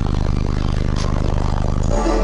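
Very loud, steady low bass tone played through a competition car-audio system's subwoofers, heard inside the car, with a buzzing rattle alongside it. It stops just before the end as music with singing starts.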